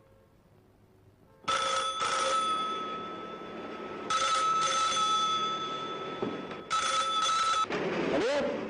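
Desk telephone ringing: three double rings, about two and a half seconds apart, each lasting about a second. The ringing stops when the handset is picked up.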